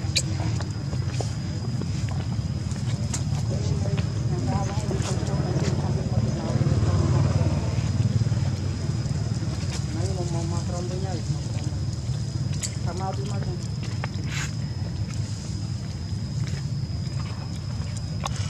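A steady low rumble with faint voices a few times and a thin, steady high-pitched whine, plus a few light clicks.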